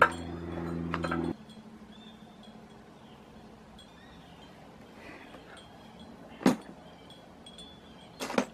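Glass wind chimes tinkling faintly. A steady low hum cuts off suddenly just over a second in, and a single sharp knock sounds near the end.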